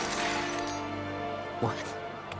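Dramatic film score sustained under the fading tail of a collapse of glass and falling debris, which dies away over the first second. A single sharp hit comes about a second and a half in.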